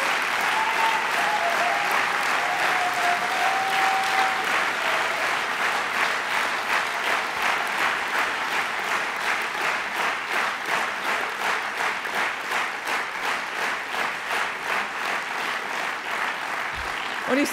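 Large audience applauding, the scattered clapping turning about six seconds in into rhythmic clapping in unison at about three claps a second.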